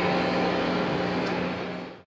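Steady low hum from the stage amplifiers between songs, with a haze of room noise, fading out at the very end.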